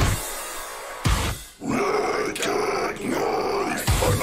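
Heavy metal song: the full band drops out at the start, leaving a quiet wash, with a single hit about a second in. A harsh, growled vocal then comes in over sparse backing, and the full band crashes back in near the end.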